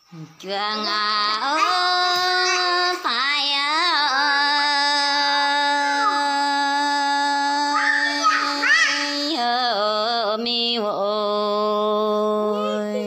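A woman singing a Red Dao (Iu Mien) folk song without accompaniment, drawing out long held notes with sliding ornaments. The voice comes in about half a second in and breaks briefly about three, nine and eleven seconds in.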